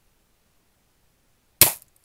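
Daisy Red Ryder BB gun carbine, a spring-air BB gun, fired once about one and a half seconds in: a single sharp pop that dies away quickly.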